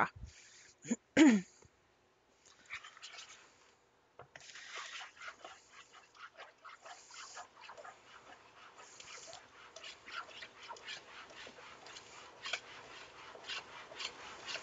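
Slotted metal spoon stirring and scraping through stiff, dry cocoa-and-flour cookie dough in a mixing bowl: irregular scraping and rasping strokes, steady from a few seconds in. A throat is cleared near the start.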